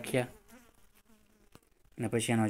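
A man's voice trails off in the first moment, followed by a pause of near silence with a single faint click about one and a half seconds in.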